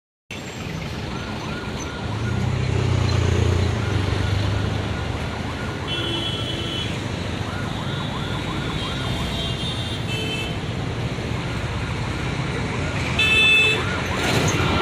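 An IndiGo Airbus jet airliner's engines at takeoff power, heard at a distance as a steady roar that swells with a low rumble a couple of seconds in, mixed with outdoor background noise and repeated short high chirps.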